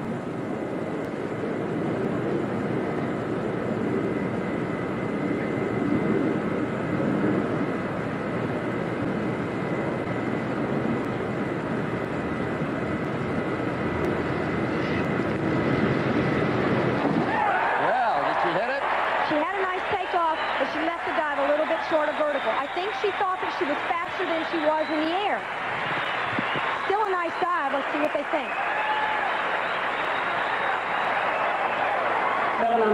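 A steady haze of background noise, then about seventeen seconds in it changes abruptly to voices talking.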